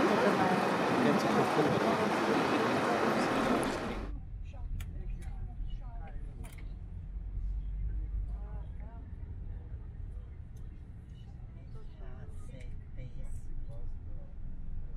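A loud rushing noise for about the first four seconds, cut off abruptly. Then the steady low rumble of a moving vehicle heard from inside, with faint voices talking.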